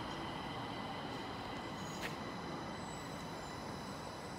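Stockholm metro C20 train standing at the platform: a steady rumble with several high steady tones from its equipment, and a single sharp click about two seconds in.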